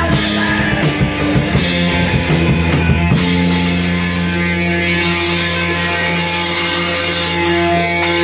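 Punk rock band playing in a rehearsal room: distorted electric guitar, electric bass and drum kit, with no vocals. In the second half the guitar and bass hold long ringing chords over the drums.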